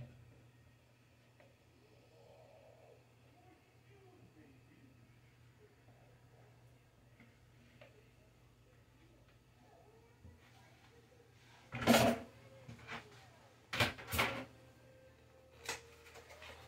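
Faint handling sounds of a spatula scraping whipped topping from a plastic tub into a plastic mixing bowl, then about twelve seconds in a cluster of four or five loud clattering knocks and rustles as kitchen containers are handled.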